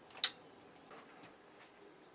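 A single sharp click from the compound crossbow's mechanism as it is handled for cocking, about a quarter of a second in, followed by faint room tone.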